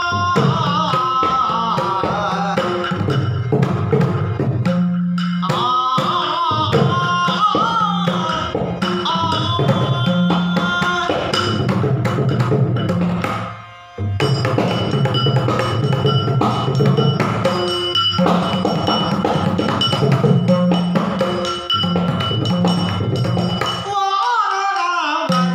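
Yakshagana bhagavata singing in the Balipa style, a gliding, ornamented vocal line over a steady drone, with the maddale barrel drum played by hand and small tala hand cymbals keeping time. The music drops away briefly about halfway through, then comes straight back in.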